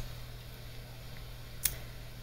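A single short click of a computer mouse about one and a half seconds in, over quiet room tone with a steady low hum.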